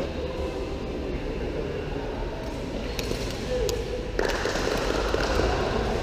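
Players' voices calling out during a sepak takraw rally in a large hall, louder from about four seconds in. A couple of sharp smacks of the takraw ball being kicked come about halfway through.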